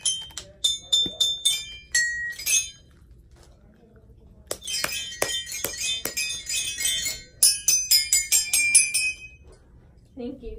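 Child's toy xylophone with coloured metal bars, struck quickly with a mallet: runs of bright ringing notes, a pause of about a second and a half a few seconds in, then a longer run of fast strikes that stops shortly before the end.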